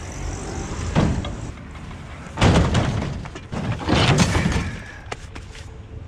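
A tall, narrow water heater tank being loaded into a pickup truck bed. A knock comes about a second in, then two longer, loud metal clatters as the tank goes onto the bed, and a few light clicks near the end.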